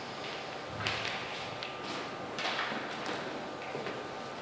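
A small sheet of paper rustling in the hands as it is folded in half: several soft, short rustles about a second apart.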